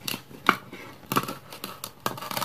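Plastic toy knife sawing and scraping at the velcro seam of a plastic toy fruit on a plastic cutting board: a string of short clicks and scrapes, the loudest about half a second in.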